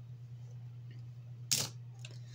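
One short plastic click or scrape, about one and a half seconds in, as a Bakugan ball is picked up off the tabletop, over a low steady hum.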